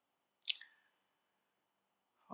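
Near silence broken once, about half a second in, by a single short wet mouth click, a lip smack.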